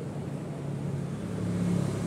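A low, steady mechanical hum, a little louder near the end.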